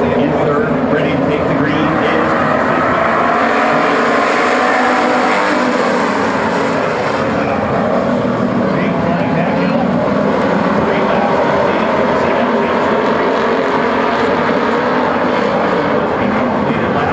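A pack of WISSOTA Street Stock race cars running at speed on a dirt oval: a dense, continuous mix of several V8 engines at high revs. The sound swells slightly around the middle as the field comes closer.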